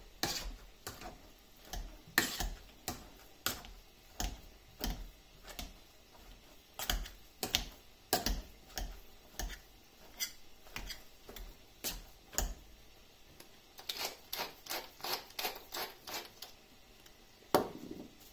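Repeated sharp knocks and clicks of kitchen utensils, irregular at roughly two a second, quickening into a denser run near the end, with one loudest knock just before the end.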